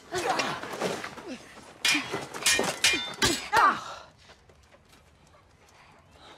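Steel swords clashing and ringing in a rapid sparring exchange, mixed with short grunts of effort. The exchange stops about four seconds in.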